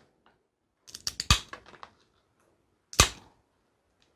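Wheeled mosaic glass nippers cutting small bits off a glass tile: a quick run of small cracks and clicks about a second in, then a single sharp snap near the end.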